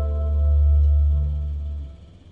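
A live rock band's final held chord: a low bass note under steady sustained guitar and keyboard tones, swelling once and dying away just before the end.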